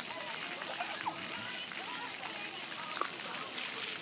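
Splash-pad fountain jets spraying and splashing onto wet pavement: a steady hiss of falling water, with children's voices faintly in the background.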